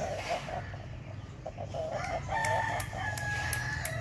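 A rooster crowing: one long, drawn-out crow in the second half.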